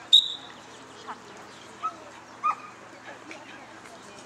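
A brief, sharp high-pitched sound right at the start, then a couple of short, high dog barks or yelps about two seconds in, over the background chatter of an outdoor dog agility field.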